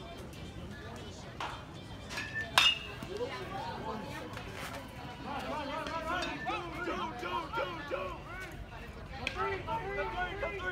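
A single sharp, ringing ping of an aluminium baseball bat striking the ball about two and a half seconds in. It is followed by several spectators' voices calling out over one another.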